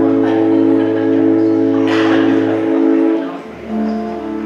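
Church organ music: a chord held steadily, then released about three seconds in, and after a brief gap a new chord with a lower bass note.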